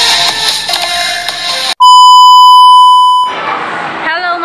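Upbeat electronic intro music that cuts off abruptly a little under two seconds in, followed by a loud, steady electronic beep, one held tone about a second and a half long, that fades out into restaurant background noise near the end.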